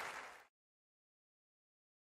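Applause fading out and cutting off suddenly about half a second in, leaving digital silence.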